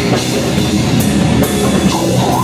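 Live brutal death/grindcore band playing loud: heavily distorted electric guitar over a drum kit, with no vocals in this stretch.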